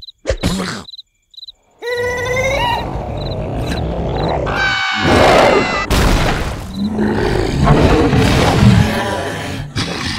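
Cartoon character screaming and groaning in a struggle as a carnivorous plant grabs it, with wavering pitched cries about two and five seconds in, over busy sound effects and music. A short near-silent gap comes about a second in.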